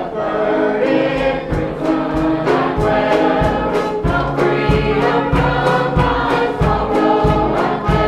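Church choir singing a gospel song with instrumental accompaniment; a steady low beat comes in about a second and a half in.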